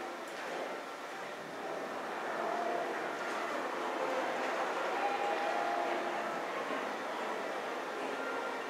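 Mitsubishi rope-traction passenger elevator car travelling downward: a steady rushing ride noise with a faint hum, a little louder in the middle of the run.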